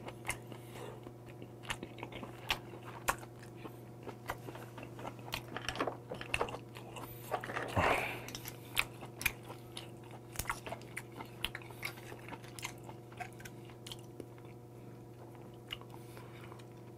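Close-miked chewing of white whelk (sea snail) meat, with many small wet clicks from the mouth. A louder drawn-in sound comes about eight seconds in, as he works meat from a shell at his mouth.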